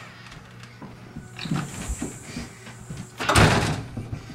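Front door and storm door being handled as someone comes in: scattered knocks and bumps, then one loud bang about three and a half seconds in.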